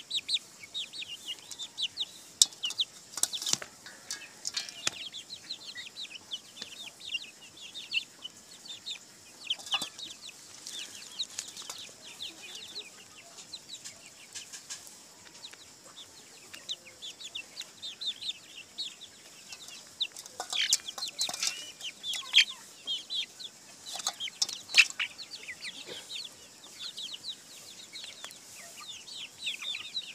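A flock of young chickens peeping and clucking in many short, high chirps as they peck at grain, with occasional sharp clicks, most of them in two clusters, one early and one past the middle.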